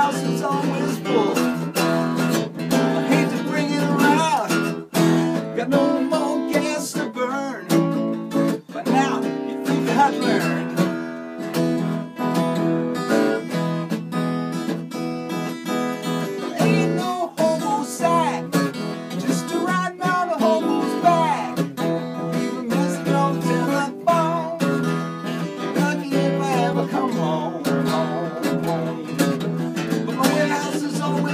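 Steel-string dreadnought acoustic guitar playing a blues, strummed chords.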